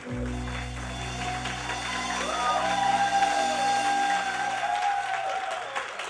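A live Latin band holding one long sustained chord over a deep bass note, with applause rising over it as the chord rings out.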